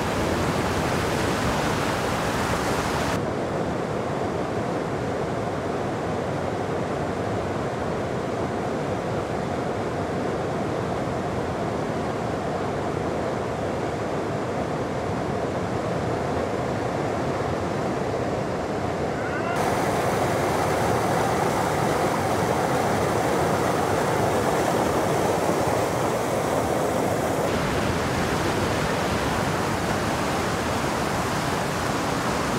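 Whitewater rapids rushing in a loud, steady, even wash of churning water. The sound turns duller about three seconds in, then brighter and a little louder again about two-thirds of the way through.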